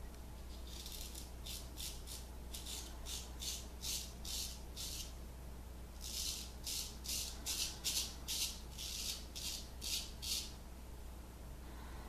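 Straight razor scraping stubble off a lathered neck in quick short strokes, about two or three a second, in two runs with a brief pause about five seconds in.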